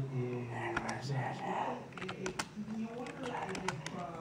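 Indistinct, muffled talk from an AM talk-radio broadcast, with sharp clicks scattered through it.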